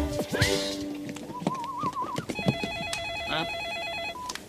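A short music cue, then from about two seconds in an electronic telephone ringing with a fast warbling trill.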